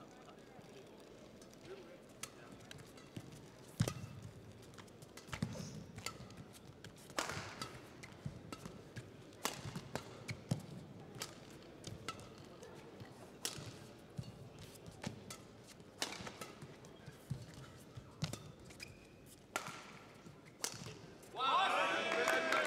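Badminton rally: rackets strike the shuttlecock in an irregular series of sharp hits, back and forth. Near the end the crowd breaks into loud cheering.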